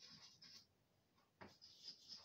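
Chalk writing faintly on a blackboard: a few scratchy strokes, a short pause, then one sharp tap of the chalk about one and a half seconds in.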